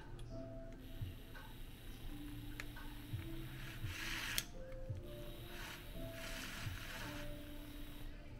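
Background music with a simple stepping melody. Beneath it a handheld milk frother's small motor whirs as its whisk spins in a mug of coffee.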